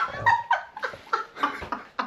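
A man and a woman laughing in a quick run of short, high bursts after a fluffed line.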